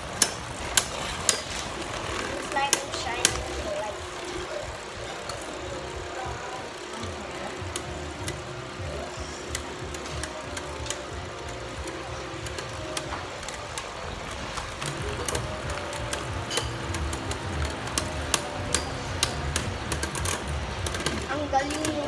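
Two Beyblade Burst tops spinning in a plastic Beyblade stadium: a steady whir of their tips running on the stadium floor, with sharp clacks as they knock together, the loudest hits coming in the first few seconds and lighter taps after that.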